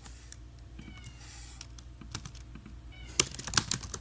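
Computer keyboard keys clicking in irregular bursts as code is typed, busier near the end. A short, high pitched sound comes about a second in and again briefly near the end.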